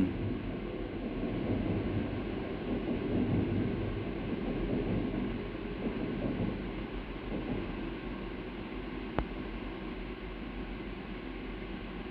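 Steady background noise with no clear source, a little louder in the first few seconds, with one sharp click about nine seconds in.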